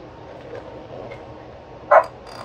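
Steady whir of the lab test instruments' cooling fans, the high-speed oscilloscope setup's fans running loud. Right at the end there is a brief loud sound.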